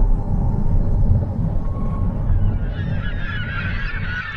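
A low steady rumble, joined about two and a half seconds in by a large flock of birds calling, many overlapping short calls.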